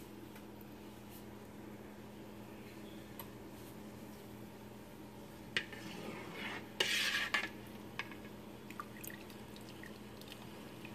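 A spoon stirring water in a metal cooking pot, scraping and clinking against the pot about six to seven and a half seconds in, with liquid sloshing. A steady low hum runs underneath.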